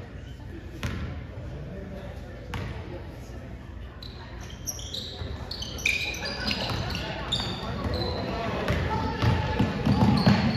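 A basketball bounced twice on a hardwood gym floor, then a flurry of short, high sneaker squeaks on the court as players scramble for a rebound, with voices rising in the echoing gym.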